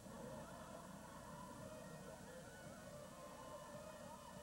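Faint, steady murmur of a crowd of many voices, no single voice standing out.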